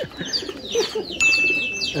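Racing pigeons in a loft cooing among rapid, high, repeated bird chirps. A steady high beep comes in a little past halfway.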